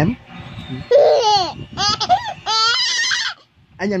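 A baby laughing in several high-pitched, rising-and-falling bursts, then a short pause.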